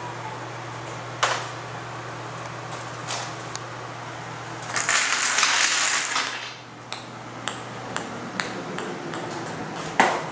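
An electric fan hums steadily, with a single knock about a second in. Around five seconds in a row of dominoes clatters down across a tabletop. Then a ping-pong ball bounces on a stone floor, the bounces coming quicker and quicker.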